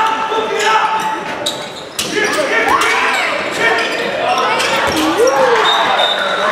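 Indoor handball play: the ball bouncing on the court floor with sharp knocks, shoes squeaking in short rising and falling squeals, and players shouting, all echoing in a large sports hall.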